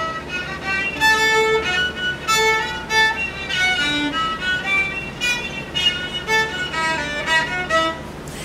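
A fiddle bowed through a quick run of separate notes as squawk notes: the left-hand fingers only touch the strings without pressing them down. This is a practice method for a light, independent left hand.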